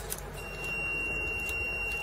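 Digital particle filling machine's buzzer sounding one steady high beep for about two seconds, starting about half a second in, as it completes a weighed fill into a pouch.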